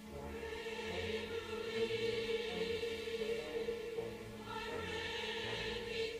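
Chorus singing with orchestra in a live concert recording of a dramatic cantata, the voices coming in at the start and holding a sustained chord.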